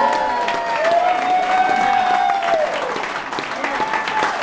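Audience applauding and cheering at the end of a song, with a long held whoop from one listener in the first half.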